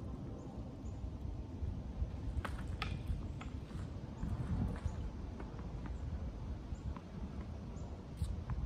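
Low, gusting rumble of wind on the microphone, with a few sharp knocks in quick succession a little over two seconds in.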